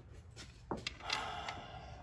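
Faint handling noise: a few light clicks and knocks, and a short rustle just after a second in.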